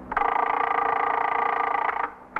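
A music sting from a radio drama: one held chord that comes in suddenly and cuts off after about two seconds.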